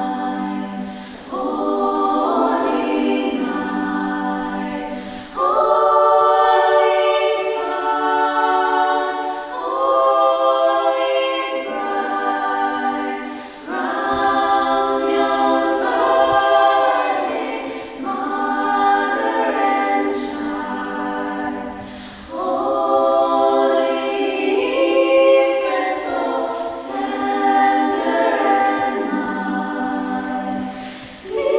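Small female vocal ensemble singing a Christmas carol a cappella, in sustained phrases of about four seconds with short breaks between them.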